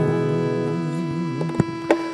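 Acoustic blues-country music: a held, wavering harmonica note fades over the guitar's ringing chord, then two sharp guitar strums come near the end.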